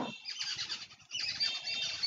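Birds chirping and squawking, a busy run of short high-pitched calls.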